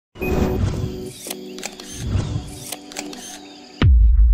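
Intro music with sharp clicking effects, ending in a loud, deep boom that falls in pitch near the end.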